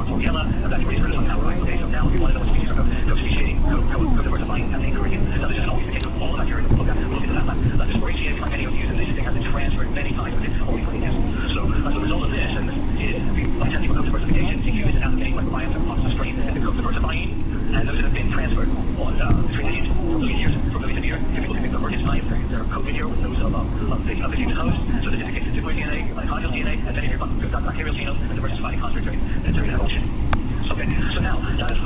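Steady, loud low rumble with indistinct voices over it throughout.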